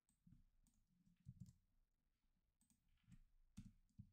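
Near silence with a few faint, scattered clicks of a computer keyboard as code is typed.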